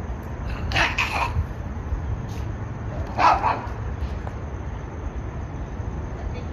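A dog barking: two quick barks about a second in and a single bark a little after three seconds, over a steady low background rumble.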